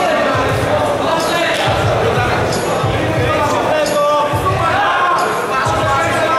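Shouted voices of cornermen and spectators echoing in a large hall, over repeated low dull thuds during ground grappling in the cage.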